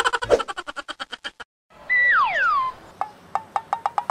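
Comic editing sound effects. First a fast run of sharp clicks, about ten a second, lasting about a second and a half. After a brief gap come two falling whistle-like tones, then a string of short pitched ticks near the end.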